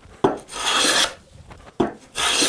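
Hand plane cutting a shaving along a wooden board, its sole rubbed with paste wax: a short knock as the plane lands, one smooth stroke of about half a second, then another knock near the end as the next stroke begins.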